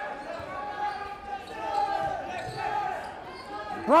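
Basketball game in a gym: sneakers squeaking on the hardwood court, with scattered voices from players and the crowd.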